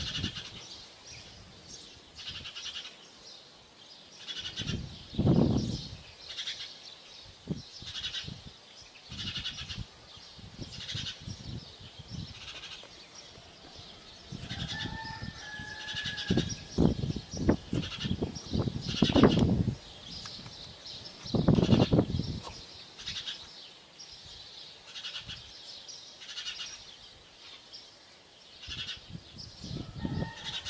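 Animal calls: short high chirps repeating about once a second, with a held call on two steady pitches about halfway through. Several loud low rumbles come and go, the strongest near the start and around two-thirds of the way in.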